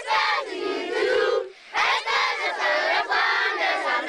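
A crowd of children singing a song in Djerma together, loud and half-shouted, in phrases with a brief pause about one and a half seconds in.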